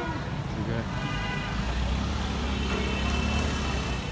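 Street traffic noise: a steady low rumble of passing vehicles, with a person laughing at the start.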